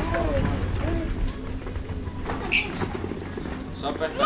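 A toddler's brief babbling sounds, a few short rising and falling calls and one high squeak about halfway through, over a steady low hum and faint background voices.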